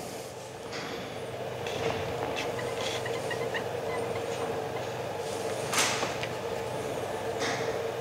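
Light handling sounds from an RC touring car chassis as its shock collars are turned by hand: a few soft clicks and knocks, the loudest just before six seconds in. A steady low hum runs underneath.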